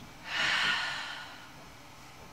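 A woman's deep breath out during a yoga breathing exercise: one audible, sighing exhale that starts about a third of a second in and fades away over about a second.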